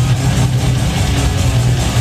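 Heavy metal band playing live at full volume: distorted electric guitars over drums and heavy bass, a dense, unbroken wall of sound.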